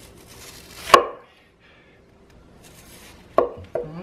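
Hand-forged Serbian chef's knife chopping an onion on a wooden cutting board: one sharp chop about a second in, a soft slicing hiss, then two lighter chops near the end.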